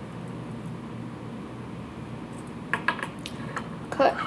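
Steady low hum of the room, with a few brief clicks and taps near the end from small items being handled at the fly-tying bench.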